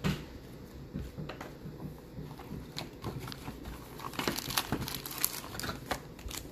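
Trading-card pack wrapper crinkling as it is handled, with scattered clicks and rustles that grow busier near the end.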